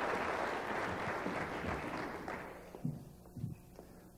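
Audience applause, fading out over the first two to three seconds.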